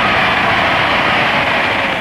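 Large audience applauding after a campaign speech line: a dense, steady wash of crowd noise.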